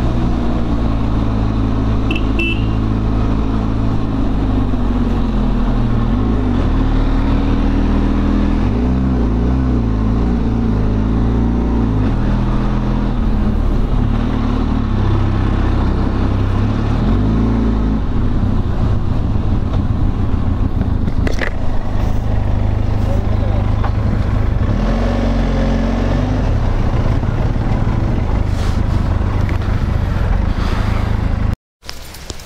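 Benelli TRK 502X's parallel-twin engine running as the motorcycle rides a winding uphill road, its pitch rising and falling several times as the throttle opens and closes.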